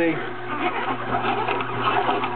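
Omega slow-turning masticating juicer running, its motor giving a steady low hum while the auger crushes Belgian endive with irregular crackling.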